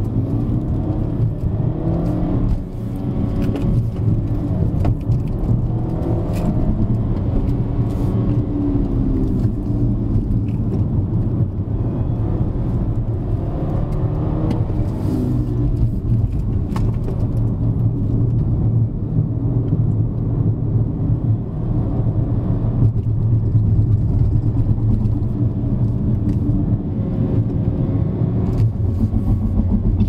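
BMW F30 330i's turbocharged four-cylinder engine and tyre noise heard inside the cabin while driving, with a steady low hum and the engine's pitch rising and falling several times as it accelerates and eases off.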